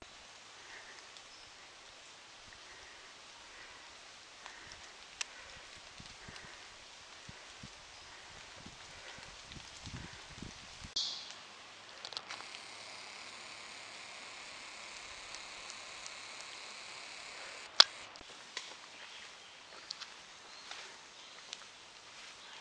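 Quiet, damp forest ambience on a hiking trail, with soft footsteps and rustling of a hiker walking with a handheld camera. A few sharp clicks, one loud one in the second half, and a stretch of steadier hiss.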